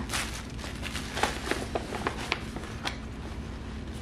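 Paper rustling and crinkling as a greeting card is handled and opened beside a gift bag of tissue paper, with a few sharp crinkles between about one and three seconds in.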